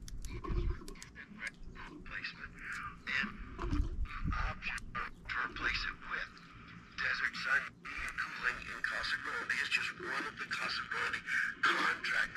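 Yaesu VX-6R handheld radio's small speaker sputtering with crackles and a thin, raspy sound, growing stronger about seven seconds in. Water left inside from being submerged is being pushed out through the speaker.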